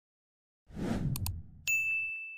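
Subscribe-reminder sound effect: a short whoosh with two quick mouse clicks, then, near the end, a single high bell ding that rings on and slowly fades.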